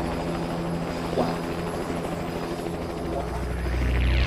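A steady low droning hum with a fast, even fluttering pulse, swelling and sweeping upward in pitch near the end, heard after the song itself has stopped.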